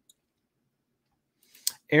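Near silence for most of the moment, broken by one sharp click about a second and a half in, just before a man's voice resumes.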